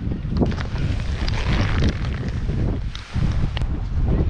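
Wind buffeting the microphone, a gusting low rumble, with a few sharp clicks.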